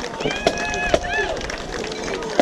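Marching band snare drums striking single sharp beats about once a second, with a voice calling out a long held shout between the first two beats over outdoor crowd noise.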